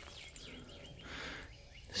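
Faint bird chirps in the background, with a brief soft rustle of loose dirt being brushed by hand about a second in.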